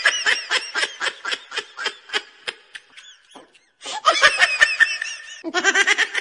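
Human laughter as a sound effect: rapid, high-pitched ha-ha bursts, about five or six a second. It breaks off briefly about three and a half seconds in, then laughing starts again, and a lower-pitched laugh comes in near the end.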